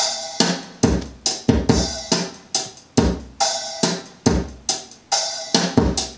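Programmed MIDI drum loop played on a Kontakt sampled drum kit, with a steady repeating pattern of kick, snare and cymbal hits. Ableton's MPC 8 Swing-53 eighth-note groove is applied, giving the straight MIDI timing a slight swing so the drums sound more human.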